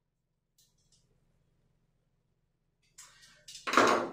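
Near silence broken by two faint ticks, about half a second apart, from a screwdriver tightening a terminal screw on a GFCI receptacle. About three seconds in, rustling handling noise starts and swells to a brief, loud burst just before the end.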